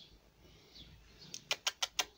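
A quick run of five sharp clicks, about six a second, starting a little past halfway.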